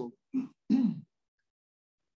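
A person's voice making three short vocal sounds, not words, in the first second.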